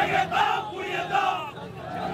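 A crowd of marchers shouting political slogans together, a run of loud shouts with a short lull near the end.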